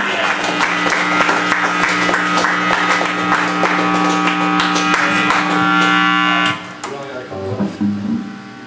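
Live rock band, electric guitar and drum kit, playing loud with held, droning guitar notes under rapid drum and cymbal hits. The music cuts off about six and a half seconds in as the song ends, leaving quieter room sound with scattered noises.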